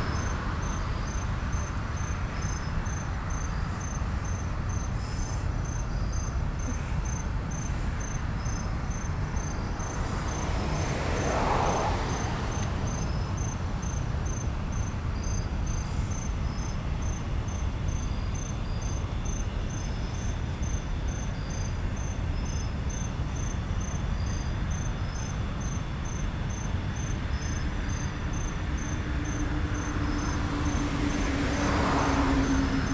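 Crickets chirping in an even rhythm over the steady low rumble of a long freight train of hopper and tank cars rolling past. A whoosh swells and fades about eleven seconds in, and a low steady hum begins near the end.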